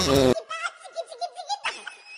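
A loud, wavering voice cuts off abruptly about a third of a second in. It gives way to quieter, high-pitched laughter, a quick run of short 'ha' pulses that keeps going.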